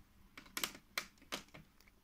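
Faint light plastic clicks, about five spread over two seconds, as Lego minifigures and pieces are handled and set down on the Lego baseplates.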